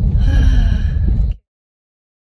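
Loud low rumble of road noise inside a car driving on a gravel road. It cuts off abruptly about a second and a half in, leaving dead silence.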